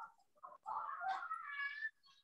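A young child's high-pitched, drawn-out squeal, rising in pitch near the end, faint in the background.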